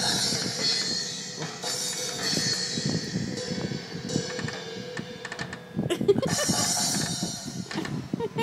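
A virtual drum kit on a tablet's touchscreen, played from the tablet's speaker as a small child pats the pads: irregular, unrhythmic drum hits with cymbal crashes several times.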